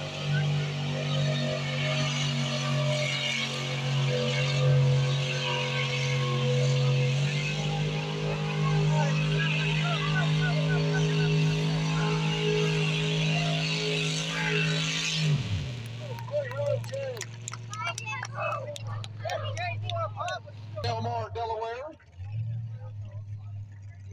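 Mud bog truck's engine running hard at high, steady revs as it drives through the mud pit, the revs stepping up a little about halfway. About fifteen seconds in, the revs drop off sharply to a low idle, and voices take over.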